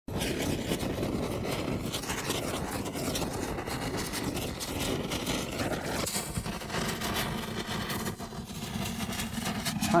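Intro sound effect of crackling sparks over a low rumble. About six seconds in the crackle thins and a lower steady hum carries on to the end.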